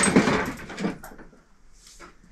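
Stored furniture and objects being shifted and handled while rummaging, a loud scraping, knocking clatter for about the first second, then much quieter with a faint rustle near the end.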